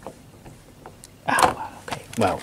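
A few faint clicks, then a short burst of a man's voice near the end, a vocal sound or word the transcript does not catch.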